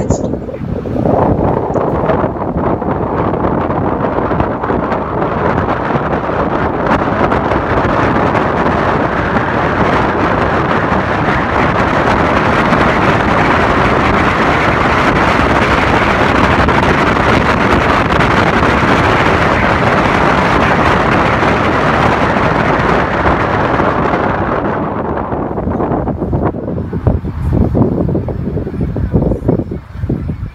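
Road and wind noise of a car driving through a long covered bridge: a loud, steady rush that grows through the crossing and eases off near the end as the car comes out and slows.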